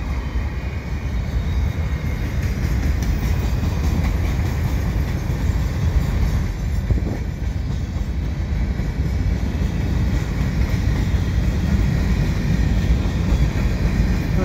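Freight train passing: a steady, continuous rumble and clatter of wheels on rail.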